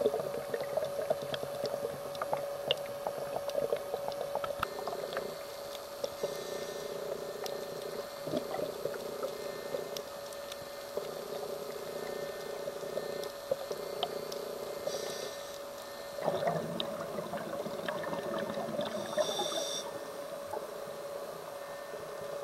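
Underwater sound of a scuba diver breathing through a regulator: short hisses on the inhale and longer rushes of exhaled bubbles, repeating every few seconds. A steady hum runs underneath.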